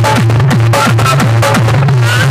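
Loud electronic dance music played through a cluster of horn loudspeakers on a DJ sound rig: a pounding kick drum about three to four times a second over a heavy, steady bass line.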